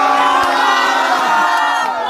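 A man's long, loud yell, like a battle cry, with other voices shouting along. It holds for most of two seconds and breaks off near the end.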